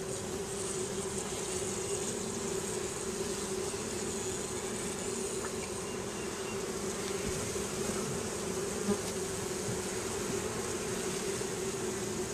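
Honeybee colony in an open hive roaring, a steady, unbroken hum of many wingbeats. The beekeeper takes the roar as the sign that the queen is on that side of the hive.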